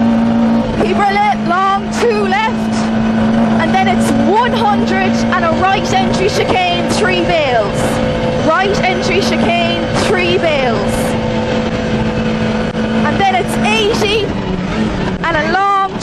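Vauxhall Nova rally car's engine held flat out at steady high revs on a straight, heard from inside the cabin. The revs ease slightly near the end.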